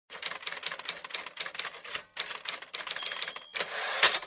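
Typewriter keys clacking in a fast, irregular run, with a brief pause about halfway, a short high ding about three seconds in, and a rising sweep near the end.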